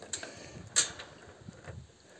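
A few light clicks and knocks, the loudest about three-quarters of a second in, from the metal chain of a hand-pulled river crossing platform being handled.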